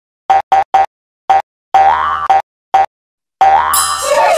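Cartoon sound effects of an animated logo sting: a run of short, separate pitched boings, two of them longer and bending upward in pitch, then a high sparkling shimmer near the end.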